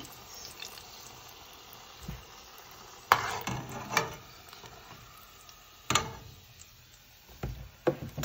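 Hot olive oil sizzling steadily around battered cauliflower deep-frying in a saucepan, with a few sharp clicks of a metal slotted spoon knocking against the pot as the pieces are lifted out.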